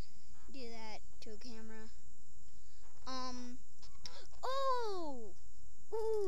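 A boy's voice making short wordless vocal sounds, then one long vocal sound that falls steadily in pitch about four and a half seconds in.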